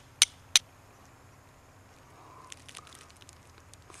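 Two sharp strikes of a high-carbon steel striker against flint, about a third of a second apart, striking sparks onto char cloth to start a fire. Near the end, faint crackly rustling of a dry fibre tinder bundle being handled.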